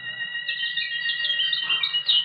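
Songbirds chirping and warbling in quick, repeated trills, starting about half a second in, over a steady held high tone.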